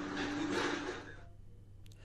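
Steady background noise with a low, even hum. It fades out about a second in, leaving near silence.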